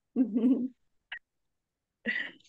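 A person's voice making a short, wavering, hum-like sound for about half a second. About a second in comes a brief faint high blip.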